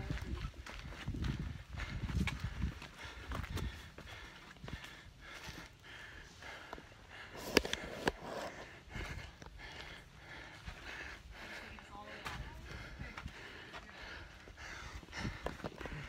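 A hiker's footsteps and breathing on a forest trail, with uneven low rumbling from a body-worn camera moving and a few sharp clicks.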